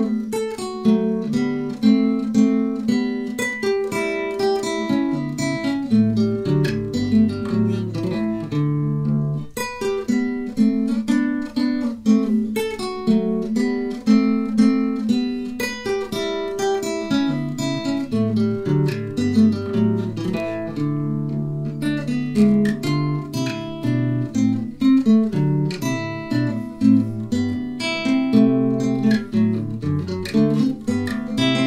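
Solo classical guitar playing a Classical-era minuet: a plucked melody over moving bass notes, with short pauses between phrases about a third and two-thirds of the way through.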